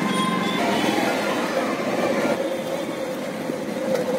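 Motorcycle engine running steadily with road noise, heard from on board the moving bike at low street speed.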